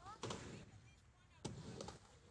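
Skateboard knocking and clattering on the skate park ramps: two sharp knocks, about a second and a quarter apart, each followed by a short rattle.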